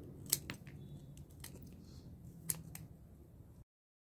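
Scissors snipping through succulent (Echeveria pallida) stems: a handful of sharp, irregularly spaced snips. The sound cuts off suddenly near the end.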